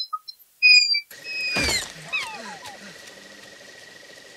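A door hinge gives a few short, high squeaks. About a second in, a film sound effect of a Dilophosaurus calling follows over steady rain: one loud falling cry, then a string of short falling chirps.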